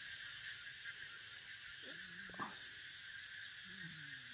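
Night insects calling in a steady, continuous high-pitched chorus, with a fainter higher chirp repeating about three times a second. A few short low whines come about two seconds in.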